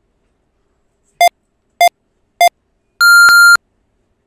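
Electronic countdown beeps: three short, lower-pitched pips about half a second apart, then one longer, higher-pitched beep that marks time's up on a 30-second timer.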